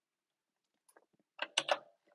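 A quick run of about four sharp clicks from a computer keyboard and mouse, starting about a second and a half in.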